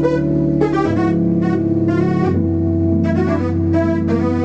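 Synthesizer keyboard playing sustained chords over a low bass line in a slow R&B track, the chord changing about a second in and again a little past two seconds.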